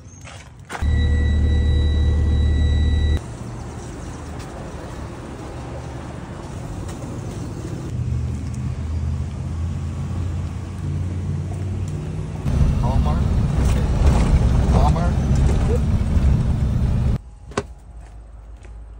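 Vehicle engine running, in short clips cut together: a loud steady hum with a faint high whine for a couple of seconds, then a lower rumble, and a louder rumble that cuts off suddenly near the end.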